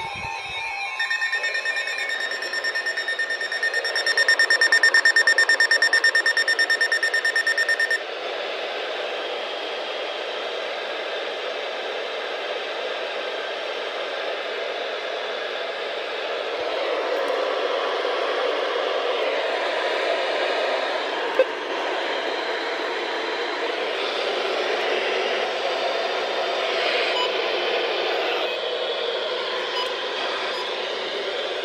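NOAA weather radios sounding their alert alarm, a pulsing high beep that stops abruptly about eight seconds in. Then comes a steady hiss of radio static.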